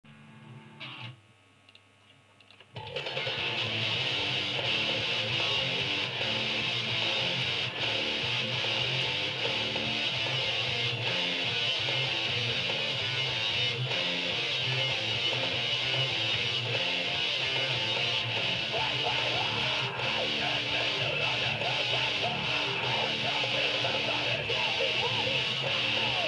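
Electric guitar in drop D tuning playing a hardcore song's riffs, coming in loud about three seconds in after a few near-quiet seconds.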